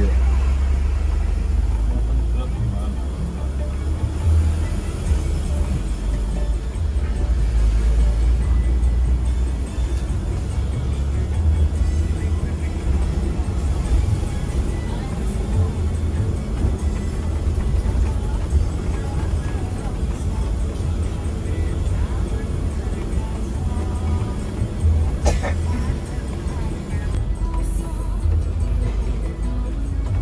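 Steady low rumble of a coach's Mercedes-Benz 1626 diesel engine and tyres on the road, heard from inside the moving cabin, with music playing under it.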